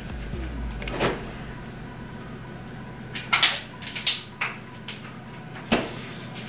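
Short clicks and knocks of makeup containers and a compact being handled and set down: one about a second in, a cluster of several in the middle, and one near the end.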